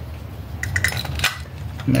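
Light metallic clinks and taps from the parts of a VW Beetle carburetor being handled as it is taken apart, a few sharp ticks clustered in the middle.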